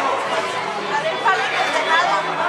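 Overlapping voices of a group of people chattering, with no single voice standing out.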